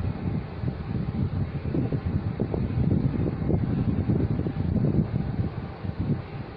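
Low, uneven rumble of moving air buffeting the microphone.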